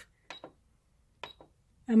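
Buttons on a Singer Patchwork sewing machine's electronic control panel pressed twice, about a second apart, each press giving a short beeping click as the stitch settings are changed.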